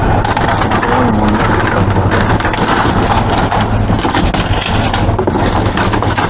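Plastic bags and trash rustling and crinkling as they are rummaged through inside a dumpster, over a steady low machine hum.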